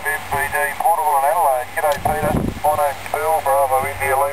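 A man's voice received on single sideband from a distant amateur station, coming through the small speaker of the homebrew 'Knobless Wonder' 7 MHz SSB transceiver, thin and narrow-band as SSB voice is. A short low rumble comes about two seconds in.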